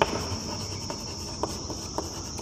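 Chalk tapping and scratching lightly on a blackboard as a word is written, a few faint clicks, over a steady high-pitched background tone.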